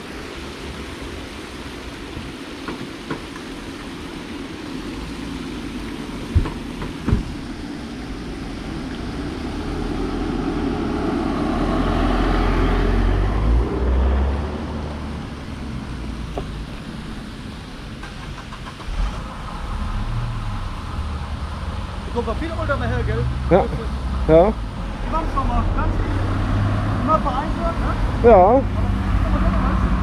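Road traffic passing a parked car: one vehicle's noise swells and fades about halfway through. In the second half a steady low engine hum sets in, with faint voices over it near the end.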